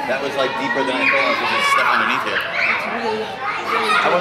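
Children playing, with overlapping children's voices and chatter.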